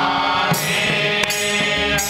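Men singing a slow devotional Dhrupad-style chant together, with sustained held notes, accompanied by a few hand strokes on a pakhawaj barrel drum and ringing jhaanjh hand cymbals.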